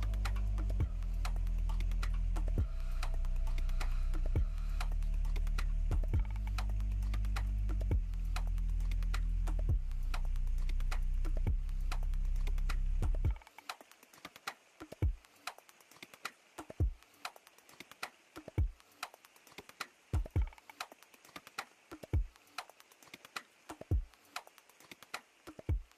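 Background music: steady low chords that change about every two seconds, dropping out about halfway through to leave a sparse beat of short low thumps and quick clicks.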